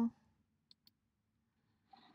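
Two faint computer mouse clicks in quick succession, less than a fifth of a second apart, against quiet room tone.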